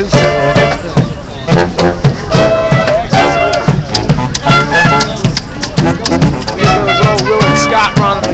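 Street brass-and-drum marching band playing: horns over a steady drum beat, with crowd voices mixed in.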